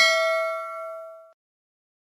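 Notification-bell chime sound effect of a subscribe-button animation as the bell icon is clicked: a single bright ding that rings on and cuts off a little over a second in.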